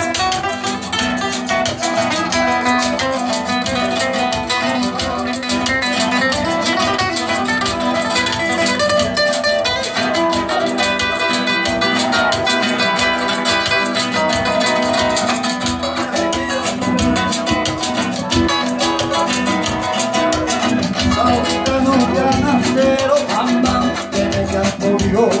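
Two acoustic guitars, one nylon-string, play an instrumental passage with steady rhythmic strumming in a Latin rumba-flamenco style, amplified through microphones.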